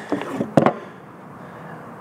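A few light knocks and handling sounds as a plastic toilet flange is set in place on the top of a plastic drum, the strongest about half a second in, followed by a steady faint background hiss.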